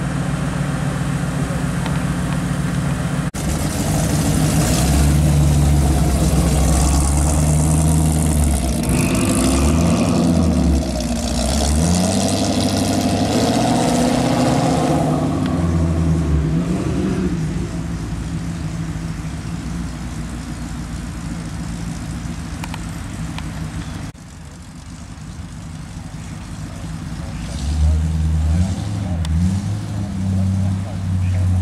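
Classic car and hot rod engines running with a deep, low note, revving up and down several times as the cars pull away. The sound breaks off abruptly twice, once a few seconds in and once later on.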